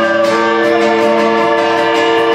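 Live worship band music: acoustic guitar under long held notes, with women singing into microphones.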